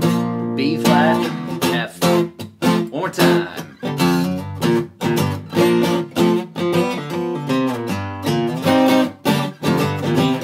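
Steel-string acoustic guitar strummed in a fast, choppy chord pattern, each chord cut short by a brief gap before the next.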